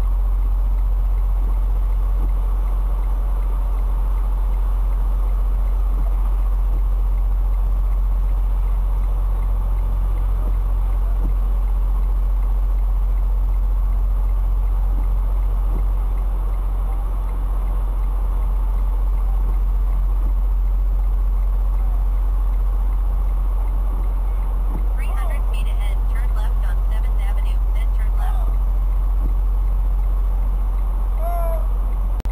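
Detroit DD15 diesel of a 2016 Freightliner Cascadia heard from inside the cab as a steady deep drone at low revs while the truck creeps along. A brief patch of quick, high clicking or chirping comes in near the end.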